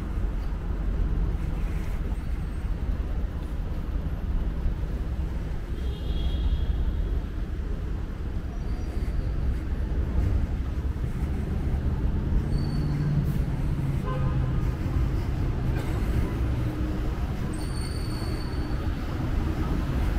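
Steady low rumble of city street traffic from cars driving along the road alongside.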